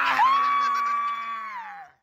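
A young child's long, high scream held steady for about a second and a half, then falling in pitch and breaking off near the end.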